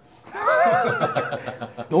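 A man's long, high-pitched laugh, wavering in pitch, starting about a third of a second in.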